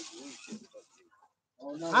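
Only voices: quiet talk that fades out, about a second of near silence, then a man's voice starting loudly near the end.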